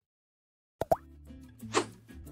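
Total silence for most of the first second, then a short pop sound effect with a quick pitch glide, followed by soft background music starting up: a logo sting.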